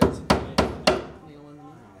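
Four quick hammer blows on a nail being driven into a plywood subfloor sheet, all within about a second, each with a short ring. The nail bends instead of going in, which the hammerer puts down to a piece of metal he thinks is buried in the plywood.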